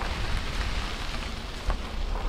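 Wind on the microphone: a low, buffeting rumble with a steady rushing hiss over it.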